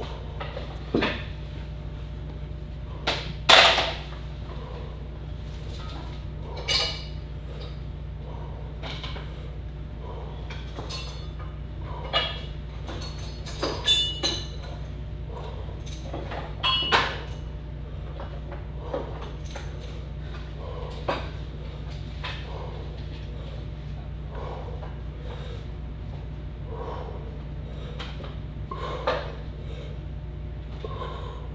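Steady low hum with scattered, irregular light knocks and clicks, the loudest about three and a half seconds in.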